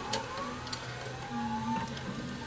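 Original 16-bit Alesis ADAT machine loading an S-VHS cassette: a faint motor whine that rises in pitch as the transport threads the tape, with a few light mechanical clicks.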